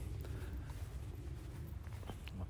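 Quiet background noise: a faint, steady low rumble with no distinct sound in it.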